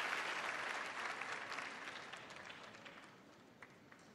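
Studio audience applauding, dying away over about three seconds, with a few last scattered claps near the end.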